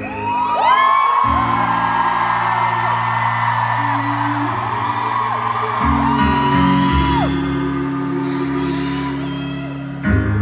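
Sustained grand piano chords, changing about a second in and again near six seconds, with an arena crowd cheering over them in long high cries that rise and fall.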